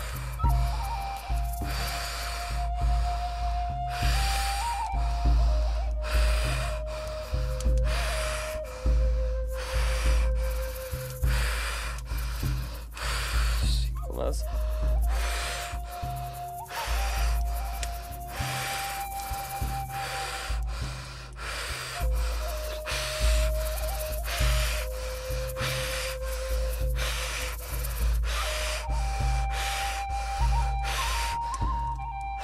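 A person breathing hard and fast in an even rhythm, each breath a short rush of air: Wim Hof–style power breathing. Under it, background music carries a slow melody of held notes.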